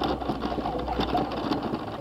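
Fast, continuous rattle of wheels rolling over block paving, with a low rumble underneath in the first part.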